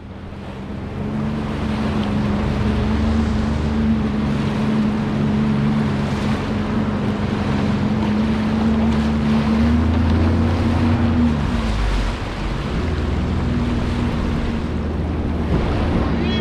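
Sea-Doo GTX 170 jet ski engine running at a steady throttle, a steady hum under the rush of churning water, spray and wind on the microphone. The engine note eases off briefly a little before twelve seconds in, then picks up again.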